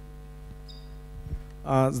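Steady electrical mains hum from the microphone and sound-system chain. Near the end a man starts speaking into a microphone.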